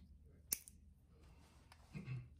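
Podiatric nail nippers snapping shut through a thick, layered toenail: one sharp snip about half a second in, then a few faint clicks of the tool.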